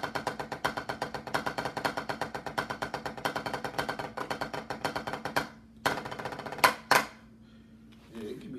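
Drumsticks playing a fast, even stream of strokes on a rubber practice pad. The stream breaks off about five and a half seconds in, then comes a short run of lighter strokes and two loud accent hits.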